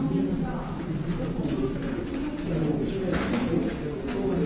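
Indistinct murmur of several people talking in a large room, with a brief hiss or rustle about three seconds in.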